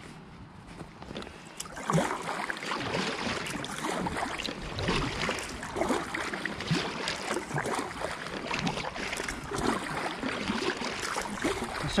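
Kayak paddle strokes: the blades dipping and splashing in the water, with dripping, in an uneven series that starts about two seconds in.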